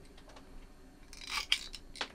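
Aviation tin snips cutting through a COB LED strip: one short, quiet snip with a sharp click about a second and a half in.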